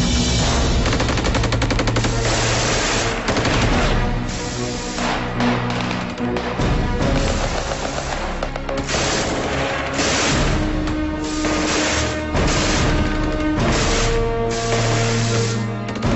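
Bursts of rapid machine-gun fire and other gunshots, repeating through the whole stretch, over a film score of held musical notes.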